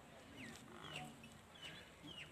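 Faint bird chirps, about three short calls each sliding down in pitch, over a quiet background.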